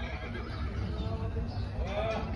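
A horse whinnying near the end, over a steady low hum and background voices.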